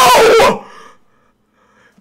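A man's loud, wordless excited yell, its pitch falling as it breaks off about half a second in.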